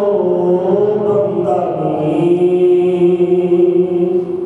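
A man's voice chanting a Sikh devotional verse in long drawn-out notes, gliding down to a lower note about a second and a half in and holding it steady.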